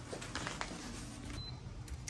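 Front door being opened: lever handle and latch clicking, then the door swinging open. A brief high tone sounds about one and a half seconds in.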